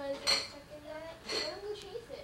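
Kitchen dishes and cutlery clinking, two sharp clinks about a second apart, with voices talking in the background.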